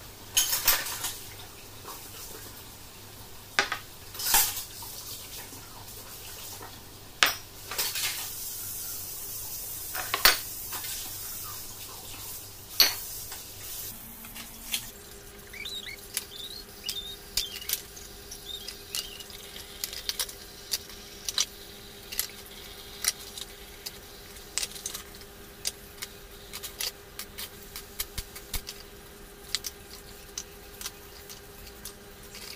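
Ceramic cups, bowls and plates clinking and knocking against each other in a sink while being washed under a running tap. Sharp, louder knocks come every second or two at first, then give way to many small quick clinks.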